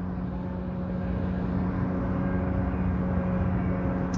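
Steady low drone of a car heard from inside the cabin, with a constant hum running through it.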